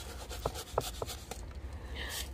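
Hands handling succulent plants with bare roots and soil: a soft rubbing rustle with several light clicks.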